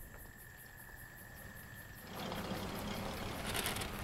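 Crickets chirping in a fast, even pulse with a steady high tone. From about halfway, a low rumble and road noise come in from an approaching vintage car, a Ford Model A.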